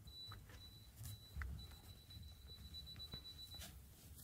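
Near silence: a faint, steady high-pitched tone with a few short breaks, stopping near the end, over a low room rumble and a few soft clicks.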